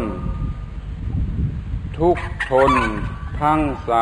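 A monk's voice reciting a line of Thai verse in a slow, drawn-out, sing-song intonation. The line starts about two seconds in, after a pause filled with low rumble.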